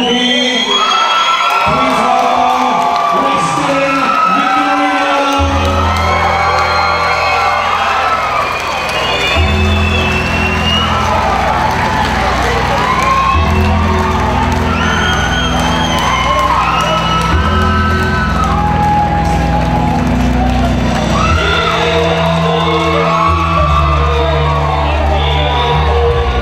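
Music with a heavy bass line that kicks in about five seconds in, over a crowd cheering and whooping.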